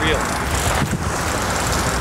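Steady low rumble of a boat's engine running, with wind noise on the microphone.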